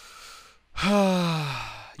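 A man breathes in, then lets out a long voiced sigh that falls in pitch, lasting about a second.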